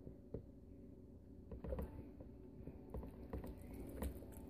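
Faint kitchen handling noise: a few light knocks and clatters as a plastic colander of steamed broccoli and the blender jar are handled, over a low steady hum.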